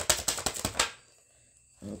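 Tarot deck being shuffled: a rapid, even run of card clicks, well over ten a second, that stops abruptly about a second in.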